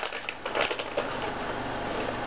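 Cat crunching a treat from the floor, a few short crunches.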